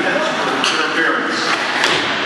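Spectators talking near the microphone in an ice rink's echoing hall, the words not clear. Two sharp knocks come through, about half a second in and again near the end.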